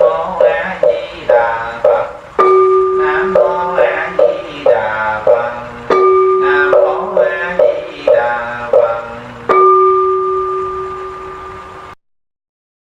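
Rhythmic chanting in short, evenly paced syllables, with a bell struck three times; after each strike its steady ringing tone dies away slowly while the chanting carries on. The sound fades down and cuts off at the very end.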